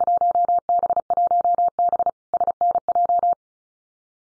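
Morse code at 35 words per minute: a steady tone of about 700 Hz keyed in rapid dits and dahs, ending about three seconds in. It is the repeat of the Field Day contest exchange "1B SNJ" (class 1B, Southern New Jersey section).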